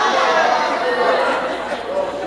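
Speech in a large hall: a voice speaking over microphone amplification, with background chatter from other voices.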